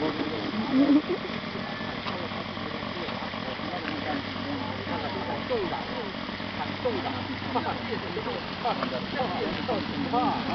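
Indistinct chatter of several bystanders over a steady low hum.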